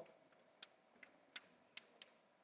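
Chalk writing on a blackboard, heard faintly as about five soft, irregular ticks as the chalk strikes the board, over near silence.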